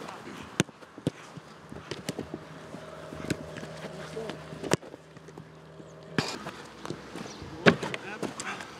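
Football kicks on a grass pitch: about seven sharp thuds of balls being struck, roughly one a second, the loudest near the middle and near the end. A steady low hum runs through the middle stretch.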